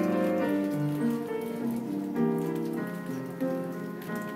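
Live small band playing a passage of a song, with piano and electric bass and a melody of held notes changing every half second or so.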